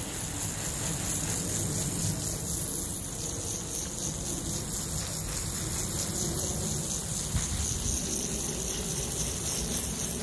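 Water from a garden hose spraying onto plants and soil, a steady patter like rain.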